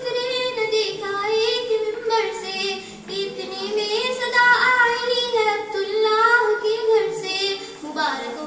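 A girl singing a naat, an Urdu devotional song in praise of the Prophet, into a handheld microphone, with long held notes that waver and glide in pitch.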